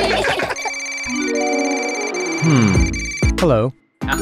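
A mobile phone ringing with a high, steady ringtone over cartoon background music and sliding voice-like sound effects. It cuts off just before the end.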